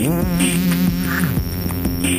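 Electronic music from a DJ mix: a sustained, wobbling synth bass note that slides up at the start and drops away about two-thirds of the way through, with a warbling tone above it and light high percussion.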